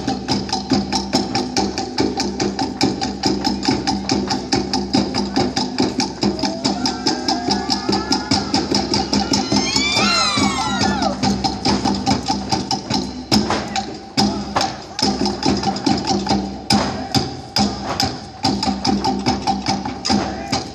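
Polynesian dance music driven by fast, evenly spaced wooden percussion strokes over a sustained backing. About halfway through, a few high gliding cries rise over it.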